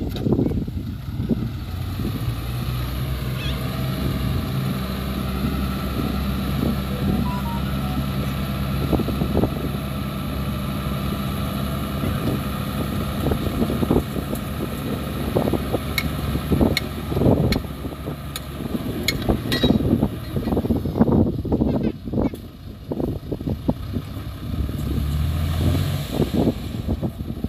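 Fuso dump truck's diesel engine running steadily while its tipper bed is raised to dump a load of soil. From about halfway on there are irregular knocks and clatters as the soil slides out of the bed.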